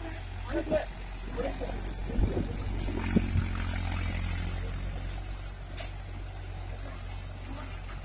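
Farm tractor's diesel engine running steadily under load while it drives a rotary tiller through grassy soil. A few sharp knocks come around two to three seconds in.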